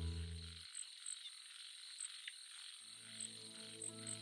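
Faint night ambience of calling frogs, with sparse short high chirps over a steady high background. Music fades out within the first second, and a low held note fades back in about three seconds in.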